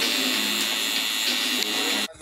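Pen-style rotary tattoo machine running with a steady high-pitched whine as it inks the skin of a neck.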